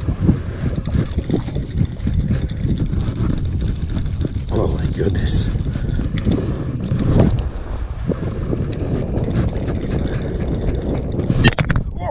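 Wind buffeting an action camera's microphone: a steady, loud low rumble.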